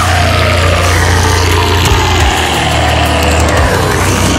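Technical deathcore playing loud, with a heavy, steady, low-tuned distorted guitar and bass drone under one long held harsh screamed vocal that bends in pitch.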